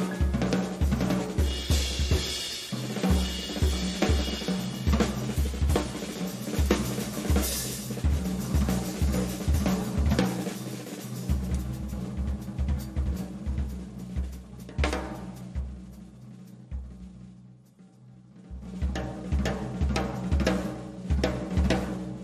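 Drum kit played busily in a live band performance: rapid kick-drum, snare and cymbal strokes over sustained low notes. It thins out and gets quieter about two-thirds of the way through, then builds back up near the end.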